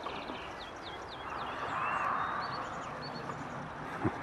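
Small songbirds calling and singing: a scatter of short whistled and chirping notes over a soft rushing background that swells and fades about halfway through.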